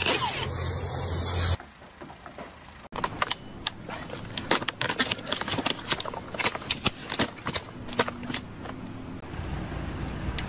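A power drill running with a steady low hum, cutting off abruptly about a second and a half in. After a short quieter gap comes a long run of irregular sharp clicks and cracks.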